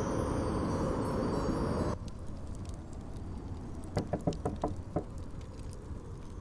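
A steady whooshing noise, like wind, for about two seconds that cuts off suddenly. Then a quieter low rumble follows, with a quick run of light knocks near the middle.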